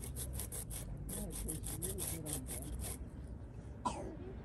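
A new Kool-Stop rubber rim-brake pad scraped rapidly back and forth on a concrete sidewalk, about six strokes a second, stopping about three seconds in. The pad's face is being scuffed on the concrete in place of sandpaper.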